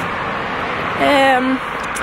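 Steady hiss of city street and traffic noise on a wet road. A woman's voice holds one level syllable for about half a second, starting about a second in.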